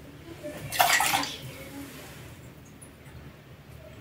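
Kitchen sink tap running briefly, a short splash of water about a second in as a small cup is rinsed, followed by a few faint clinks.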